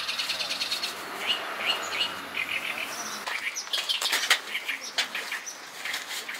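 Wild birds chirping, with a fast run of high chirps in the first second. Scattered sharp clicks and rustling of camping gear being handled, the loudest click a little past four seconds in.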